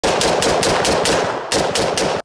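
Springfield Armory M1A Scout Squad .308 semi-automatic rifle fired in a rapid string, about five shots a second, around a dozen shots with a short break about midway.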